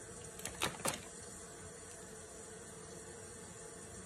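A few quick spritzes from a pump bottle of Fix+ setting spray, clustered about half a second in, followed by faint room tone.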